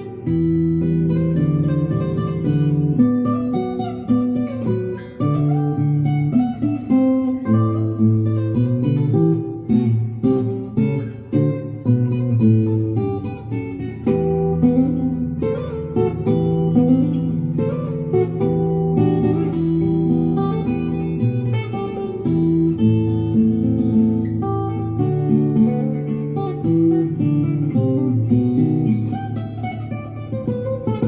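Guzheng played with finger picks, a plucked melody over held low notes in continuous music.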